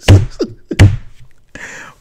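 A man laughing in short bursts, with two heavy thumps about a second apart, then a breath in near the end.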